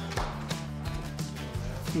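Background music with low sustained bass notes and percussive hits.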